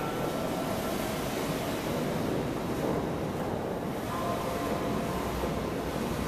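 Steady rumble of a boat's engine with water noise, heard from aboard a boat moving on a canal, with a few faint steady tones over it.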